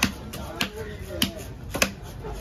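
Large knife chopping through a big fish onto a wooden log block: four sharp chops evenly spaced a little over half a second apart, with a lighter one between the first two.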